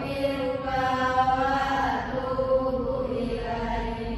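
A voice chanting in long, drawn-out held notes that slide from one pitch to the next.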